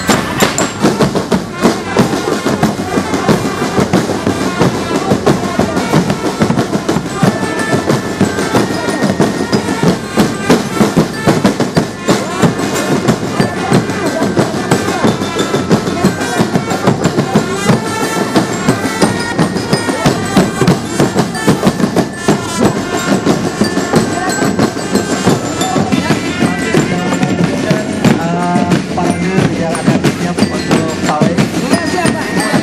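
Marching drum band playing: bass drums and snare drums struck in a fast, dense rhythm, with a melody carried over the drums.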